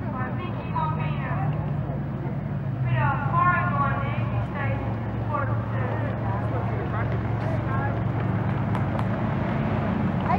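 Engines of several speedway cars towing caravans running steadily at low speed as they roll along the track, with spectators' voices chattering over them, loudest a few seconds in.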